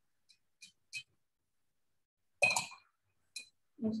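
A paintbrush clinking against a glass jar of rinse water as it is cleaned: three light taps in the first second, a louder knock about two and a half seconds in, and one more tap just before the end.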